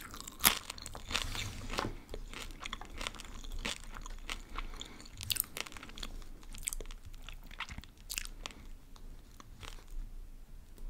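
Close-miked chewing of a crunchy snack: a run of crisp crunches and crackles, the sharpest about half a second in.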